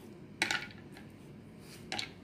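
Two short, sharp clinks about a second and a half apart: ice cubes dropped into glasses of beetroot juice.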